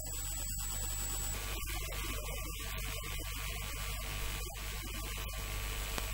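Steady electrical mains hum with a constant background hiss, and a faint high whine that stops a little over a second in.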